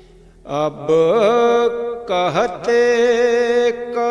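A solo voice singing a devotional chant in long held notes with wavering ornaments, starting about half a second in after a brief lull.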